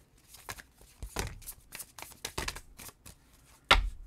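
A deck of tarot cards being shuffled by hand: a run of short, quick card riffles and snaps. About three-quarters through comes a single louder knock as a card or the deck is put down on the table.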